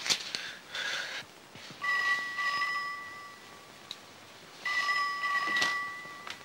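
Telephone ringing twice, each ring a steady two-pitch tone lasting about a second and a half, with a pause between them. A short knock sounds at the very start.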